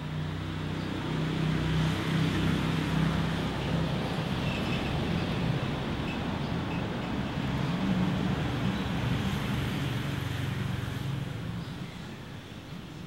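A motor vehicle's engine running close by, a steady low rumble that fades near the end.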